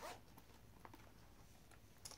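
Near silence, with a few faint small clicks and rustles from a leather wallet being handled.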